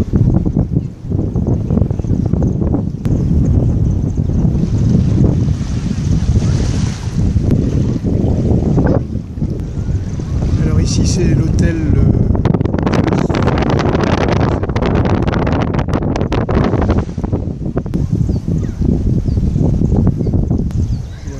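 Wind buffeting a phone's microphone outdoors: a loud, steady low rumble that never lets up.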